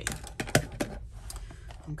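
A handful of sharp, irregular clicks and taps as a plastic tape dispenser and paper are handled and set down on a craft cutting mat.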